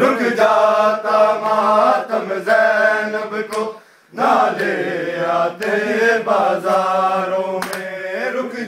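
A group of men chanting a noha, a Shia mourning lament, together in unison, with a short break in the singing about four seconds in. A few sharp slaps are heard, mostly near the end: hands striking bare chests in matam.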